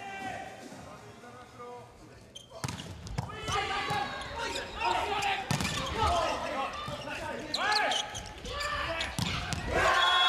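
An indoor volleyball rally: after a quieter start, the ball is struck sharply again and again from about two and a half seconds in, with sneakers squeaking on the court and players calling out, echoing in a large hall.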